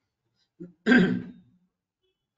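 A man clearing his throat. There is a small catch about half a second in, then one louder clear just under a second in.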